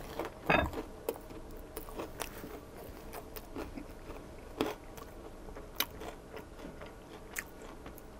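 Close-up eating sounds of a Korean-style corn dog coated in crunchy fry chunks and panko crumbs: a crunchy bite about half a second in, then irregular crunches and mouth sounds as it is chewed.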